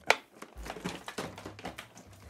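Rummaging for a mains cable: a sharp knock just after the start, then a run of small irregular clicks and rustles as things are moved and handled.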